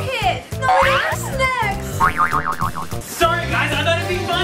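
Cartoon comedy sound effects over background music: sweeping up-and-down pitch glides, then a fast wobbling 'boing' about two seconds in.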